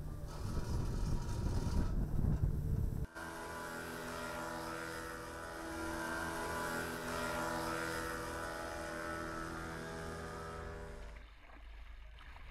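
Boat engine noise: a low rumble for the first three seconds, then a steady, even-pitched engine drone that fades out about a second before the end.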